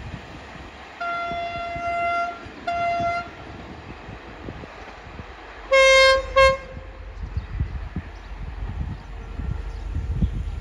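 Diesel train horns: a long blast then a short one at one pitch, then about six seconds in a louder, lower-pitched long-and-short pair. Underneath, the rumble of a diesel passenger train hauled by SRT locomotive 5211 builds as it approaches.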